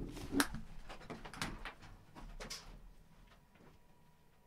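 A few knocks, bumps and rustles close to the microphone as a person gets up from a desk and moves away, fading out about three seconds in.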